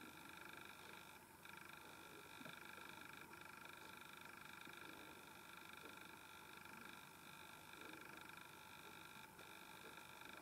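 Near silence: room tone with a faint steady high whine made of several tones, which breaks off briefly about a second in and again near the end.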